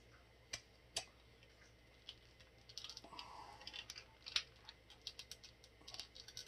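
Light plastic clicks and ticks from a small action figure being worked by hand as a swapped head is pressed onto its neck peg: two clicks early, then a run of quick clicks with one sharper click in the middle. The head is not seating fully on the peg.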